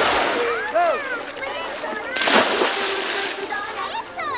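A child jumping from a wooden pier into the sea: one loud splash about two seconds in.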